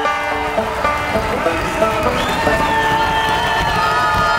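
A country band playing live, with the audience cheering and shouting over the music.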